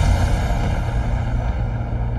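Deep, steady rumbling drone from a dramatic background score. It swells with a low hit right at the start, after the melody has dropped away.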